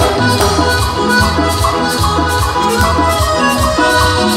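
A band playing Latin dance music in an instrumental stretch without singing: a steady bass line moving about every half second under a pitched melody and percussion.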